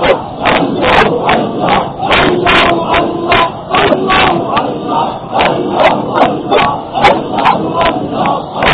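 A man's voice delivering a loud, impassioned religious sermon in continuous phrases, with frequent sharp clicks of distortion running through the recording.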